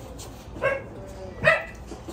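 A dog barking twice, two short, sharp barks a little under a second apart, the second louder.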